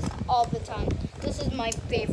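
A young girl's voice murmuring without clear words, with small clicks and taps as she handles a miniature toy laptop in her fingers.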